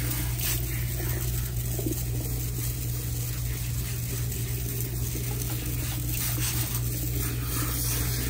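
Water spraying steadily from a salon shampoo-bowl sprayer onto hair being rinsed.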